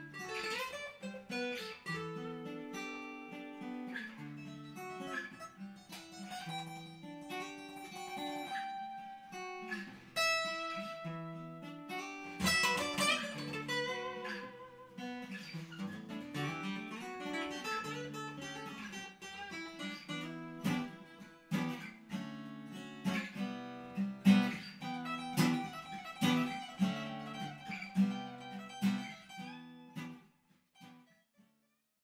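Two acoustic guitars, a Taylor 114ce and a Faith Venus Blood Moon, playing a duet of picked notes and strummed chords, with harder-struck notes in the last few seconds before the sound fades out at the end.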